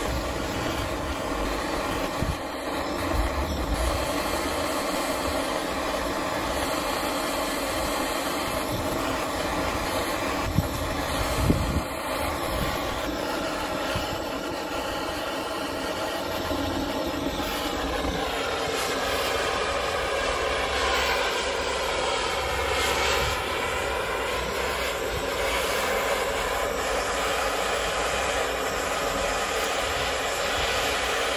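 Steady hiss of a handheld gas torch flame playing on a small crucible, melting silver scrap. The tone of the flame shifts about two-thirds of the way through, and there are two sharp knocks a little before halfway.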